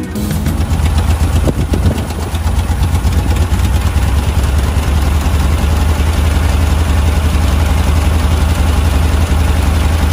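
1966 Porsche 912's air-cooled flat-four engine idling steadily, a low, even rumble.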